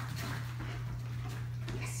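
A steady low hum with the faint sounds of a German shepherd moving about on foam floor mats; a spoken 'yes' begins right at the end.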